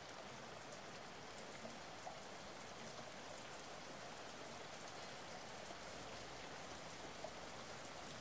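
A faint, steady, rain-like hiss with a few light ticks.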